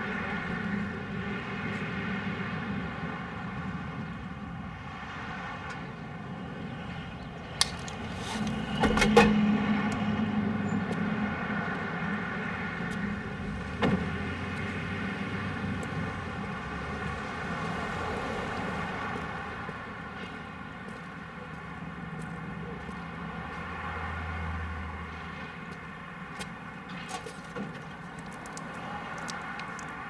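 Street traffic ambience with vehicles, under a steady unchanging drone. There are sharp clicks at about seven and a half and fourteen seconds, and a louder thump about nine seconds in.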